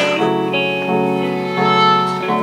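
Instrumental gap in a live song between sung lines: electric guitar with held chords that change twice.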